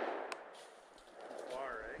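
The echo of a shotgun report fading away over the first half second, with a short click, then a man's voice starting to speak near the end.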